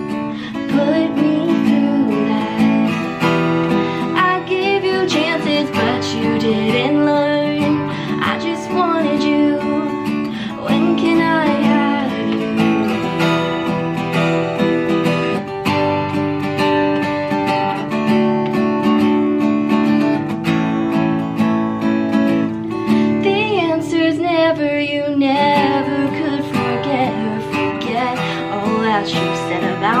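Acoustic guitar strummed in chords with a woman singing over it.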